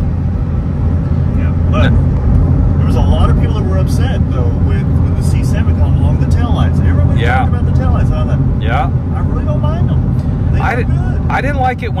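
Steady low engine and road drone inside the cabin of a C7 Corvette Z06, its supercharged 6.2-litre LT4 V8 cruising at about 64 mph.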